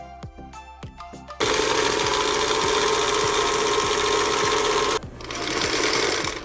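Background music, then about a second and a half in a freshly cleaned and oiled Singer Featherweight 221 sewing machine starts stitching through fabric, running loud and steady at speed for about three and a half seconds before cutting off suddenly.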